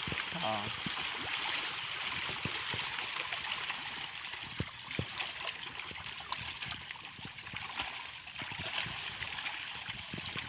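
Milkfish (bangus) thrashing at the surface of a fishpond: a continuous splashing hiss of churned water, with sharper individual splashes now and then.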